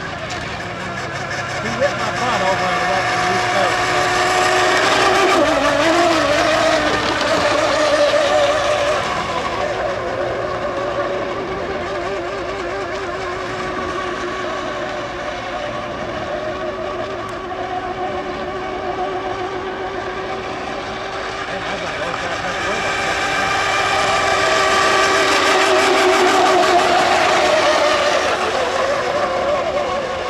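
Electric 1/10-scale RC racing boats running at full speed, their motors giving a high whine whose pitch wavers. The whine swells as the boats pass close, early on and again near the end, and water spray hisses beneath it.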